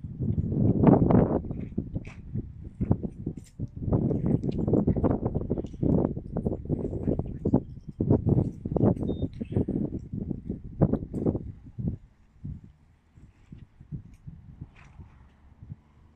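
A dense run of irregular knocks and rustles that thins out and grows faint after about twelve seconds.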